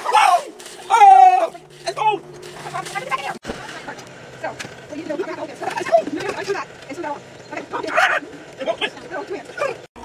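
Indistinct voices talking and calling out, with a high drawn-out call about a second in and a faint steady low hum underneath.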